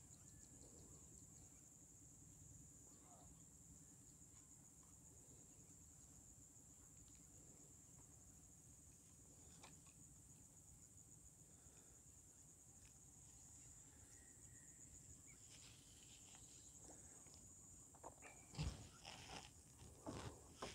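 Near silence with a faint, steady, high-pitched insect trill throughout. A few soft knocks and rustles come near the end.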